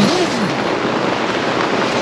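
Heavy rain in a thunderstorm falling hard on a tent, heard from inside as a steady, even hiss.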